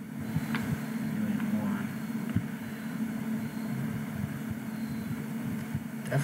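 Steady low hum of running equipment, with a couple of faint clicks about half a second and two and a half seconds in.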